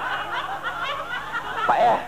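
Snickering laughter mixed with speech, ending in a single short spoken word near the end.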